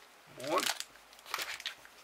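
Foil trading-card booster packs crinkling as a stack of them is handled, in a few short crackles about a second and a half in.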